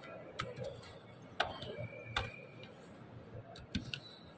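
Several sharp, irregularly spaced clicks over faint room noise, with a brief faint high tone near the middle.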